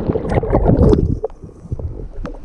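Lake water churning and bubbling around a camera plunged into it by a person's jump: loud for about the first second, then falling to quieter splashing and sloshing as the swimmer moves through the water.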